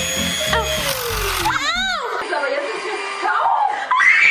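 Electric hand mixer running, its motor tone sliding steadily down as it slows, with the beaters catching in long hair, and a high cry from the girl about a second and a half in.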